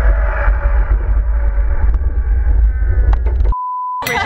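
Riders screaming on a roller coaster, with heavy wind rumble on the microphone. About three and a half seconds in it cuts off suddenly into a steady electronic beep.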